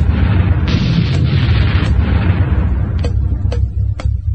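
Dance music from a DJ mix: a heavy bass line under a loud wash of white noise that surges again just under a second in and fades away by about two and a half seconds in, followed by a couple of sharp percussion hits.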